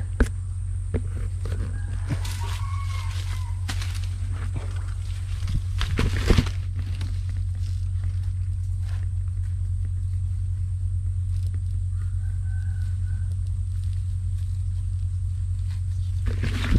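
A rooster crowing faintly twice, a longer crow about two seconds in and a shorter one near the end, over a steady low hum. There are scattered crackles of dry leaf litter, loudest about six seconds in.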